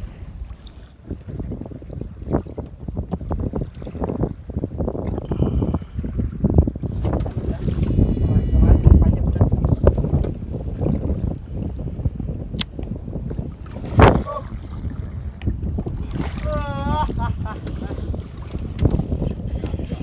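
Wind buffeting the microphone over choppy sea water washing and slapping against a small wooden fishing boat, a rough low rumble that swells about halfway through. A single sharp knock sounds about fourteen seconds in.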